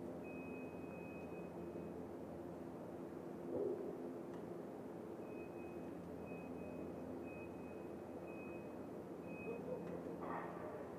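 Electronic start-clock countdown for a track cycling pursuit. A high beep lasting about a second near the start, then short high beeps about once a second over the last five seconds, counting down to the release of the start gates. A steady low hum runs beneath.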